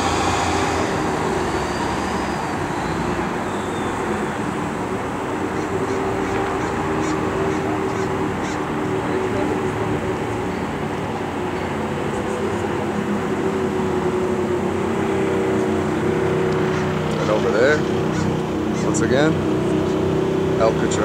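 Steady outdoor traffic noise with a continuous low rumble, and faint voices near the end.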